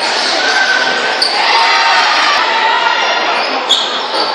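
Live basketball game in a large, echoing gym: a ball bouncing on the hardwood court over steady crowd chatter and shouting, with a few short high squeaks and a sharp knock near the end.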